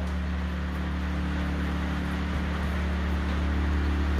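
A steady, low mechanical drone with a constant hum, unchanging throughout.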